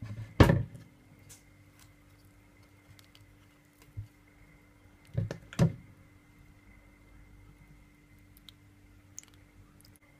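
Knocks and thuds from a blender jar being handled: a loud pair just after the start, a small one about four seconds in and another pair about five seconds in, over a faint steady hum.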